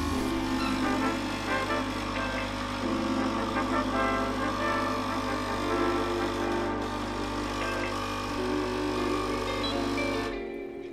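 Grind espresso machine's pump humming steadily as it brews a shot of espresso.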